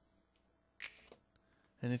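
Near silence: quiet room tone, broken by one brief soft noise about a second in, with a man's voice starting again near the end.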